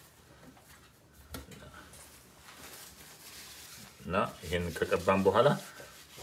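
Faint, soft rubbing of fingers spreading fat over a stainless steel baking pan while greasing it, with a small click about a second and a half in. A man's voice speaks about four seconds in.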